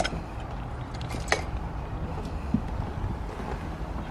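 Steady low rumble of wind on the microphone outdoors, with a sharp click at the start and a brief sharp tick a little over a second in.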